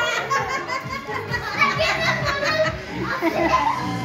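Several children talking and shouting over one another, with music playing in the background.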